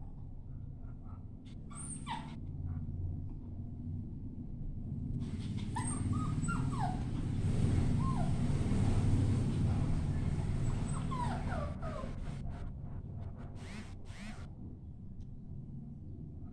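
A puppy whimpering: short, high, falling whines in two clusters, about six and eleven seconds in, as she balks at going down the stairs out of fear. Beneath them a noisy rustle swells and fades in the middle.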